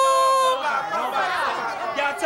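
Voices only: one voice holds a drawn-out note for about half a second, then a group of voices talks and calls out over one another.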